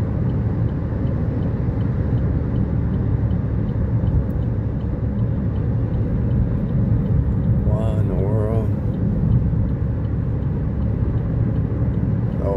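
Steady low road and engine noise of a car driving at highway speed, heard from inside the cabin, with a faint, regular ticking running under it. A short wavering voice sound comes about eight seconds in.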